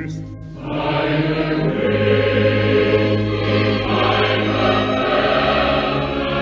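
Old 1941 recording of a chorus singing with orchestra in a German song. The chorus comes in with full held chords about half a second in, after a brief lull, and the sound is band-limited with nothing bright on top.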